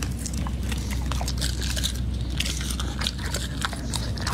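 Chocolate Labrador biting and chewing raw meat off a rib bone: a dense run of quick wet crunches and clicks over a steady low rumble.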